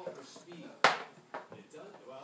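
Two sharp knocks as toys are handled in a wooden toy bed: a loud one a little before the middle, then a lighter one about half a second later, over faint voices from a television.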